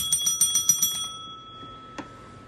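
A small metal bell rung rapidly, a quick run of about eight strikes in the first second, then left ringing and fading away.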